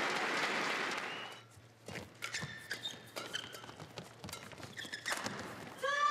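Arena applause fading out over the first second and a half, then a badminton rally: sharp clicks of rackets striking the shuttlecock, footfalls, and short high squeaks of court shoes on the floor.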